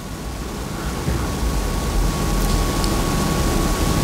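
Steady background hiss with a low rumble, slowly growing louder, with a thin steady tone joining in about a second in.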